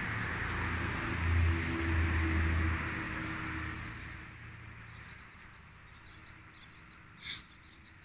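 A motor vehicle's engine running, a low hum that swells about a second in and then fades away over the next few seconds. A brief high chirp comes near the end.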